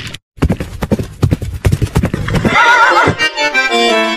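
Sound effect of a horse galloping, with rapid hoof clip-clops, then a horse whinny whose pitch wavers, about two and a half seconds in. Steady music chords follow near the end.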